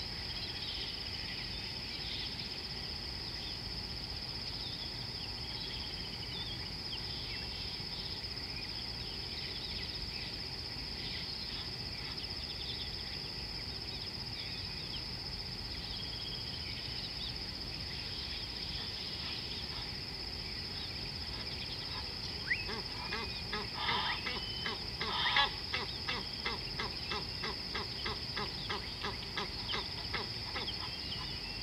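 A steady high insect drone with scattered bird chirps over it. About two-thirds of the way in, a bird starts a rapid series of harsh repeated calls, two or three a second, loudest about a second or two after they begin, and they run on to the end.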